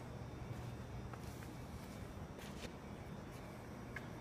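Faint steady low hum and background noise, with a few soft, brief scuffs.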